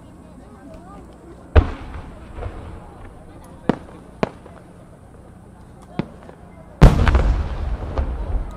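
Aerial firework display with 8-inch (No. 8) shells: a sharp launch bang about a second and a half in, a few lighter cracks, then the loudest boom near the end as a shell bursts, with a long rolling echo.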